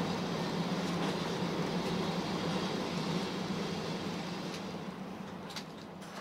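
Cabin sound of a Kiha 185 diesel railcar rolling slowly into a station: a steady low engine hum with running noise and a few faint clicks, growing quieter toward the end.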